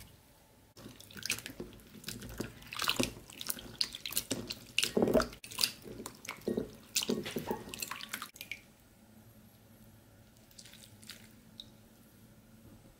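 Hands rubbing and swishing prunes in a bowl of water, with irregular splashing and squelching strokes, then quieter with a few faint drips near the end.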